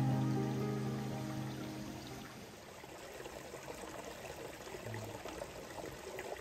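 Background music fading out over the first two seconds or so, leaving the steady trickle of a shallow mountain stream running over stones.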